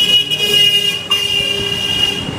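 A vehicle horn held in one long, steady, high note, broken briefly about a second in, over street noise.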